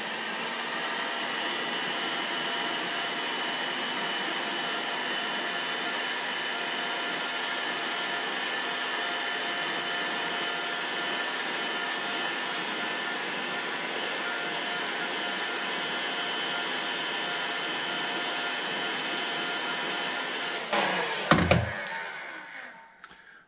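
Electric heat gun running steadily, its fan and hot-air blast shrinking heat-shrink tubing over a freshly soldered battery-cable lug. The motor spins up at the start and winds down near the end, with a knock.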